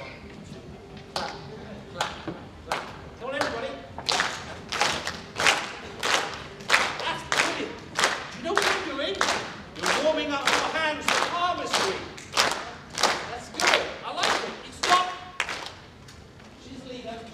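Hand claps in a steady rhythm. They start sparsely about a second in, settle into an even beat of roughly one and a half claps a second, and stop just before the end.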